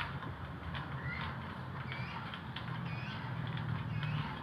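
Outdoor background with a steady low hum and a few faint, short bird chirps, about a second in and again around the middle.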